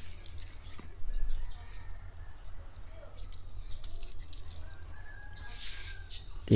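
Faint outdoor background through a handheld phone microphone: a steady low rumble, with a soft rustle about a second in and a few faint clicks.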